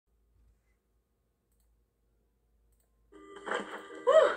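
Near silence with a few faint clicks, then about three seconds in an animated film's soundtrack starts playing from laptop speakers, a voice starting to speak.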